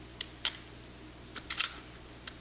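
Small metallic clicks from a Mossberg 500 pump shotgun's action being worked by hand as the bolt is moved forward and the action slide arms are freed from the receiver. A few light clicks come first, then a sharper metal clink with a brief ring about a second and a half in.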